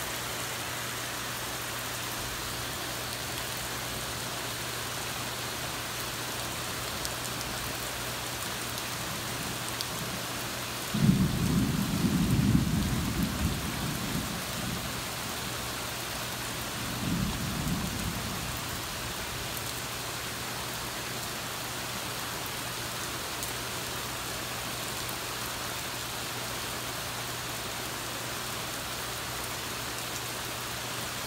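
Heavy, steady rain falling throughout a thunderstorm. About eleven seconds in a loud clap of thunder breaks out and rumbles for a few seconds, followed a few seconds later by a second, weaker rumble of thunder.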